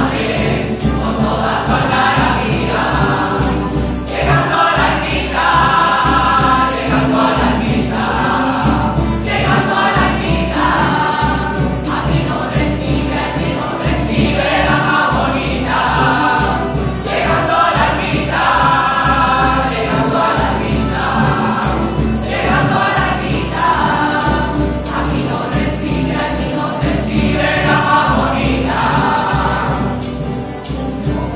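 Mixed choir of men and women singing a rociero-style song together in Spanish, accompanied by a strummed acoustic guitar keeping a steady rhythm.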